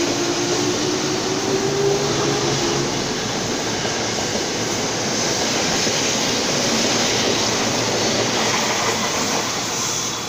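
Ex-Tokyo Metro 6000-series electric commuter train pulling away from a platform: a faint traction-motor whine rises slightly in pitch over the first few seconds under the steady running noise of the wheels and carriages passing close by.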